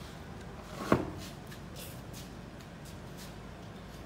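One sharp knock about a second in, with a short ring, against faint handling noise during hand assembly of an excavator's hydraulic swing motor.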